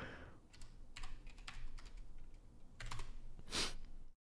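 Faint typing on a computer keyboard: a handful of irregular key clicks, the loudest one near the end.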